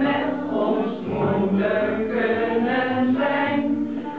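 A small group of women and men singing a song together, voices continuous with no pause.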